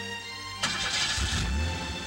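A car engine starting over background music: a sudden burst of noise about half a second in, followed by a short low rumble as the engine catches.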